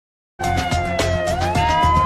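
News-channel intro jingle starting about half a second in: synthesized music with a beat under a sustained siren-like tone that dips and then slides up to hold higher.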